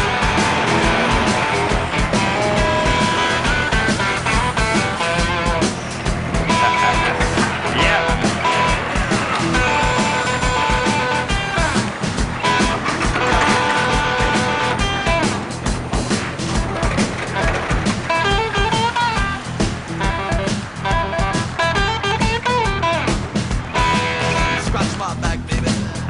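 Rock music with a steady beat, an instrumental stretch with no singing.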